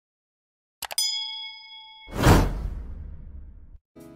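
Subscribe-button animation sound effects: a few quick mouse clicks about a second in, then a bell-like ding that rings for about a second, followed by a loud whoosh with a low rumbling tail that fades out.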